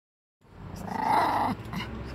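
Small dog growling: one rough growl of about a second starting about half a second in, then a brief shorter sound near the end.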